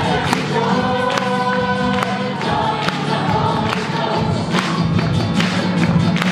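Church choir singing a joyful hymn with accompaniment and a steady beat.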